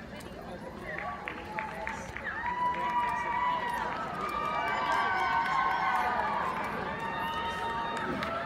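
Spectators' voices and sustained shouts overlapping in a large indoor arena. A few sharp clicks come between one and two seconds in.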